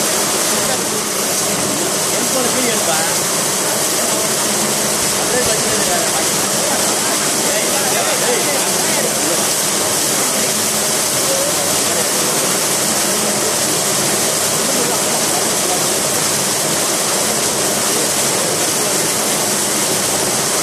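Steady, loud rushing of water in a cooling tower, with water churning through a concrete channel around a stainless-steel vortexing flow tube.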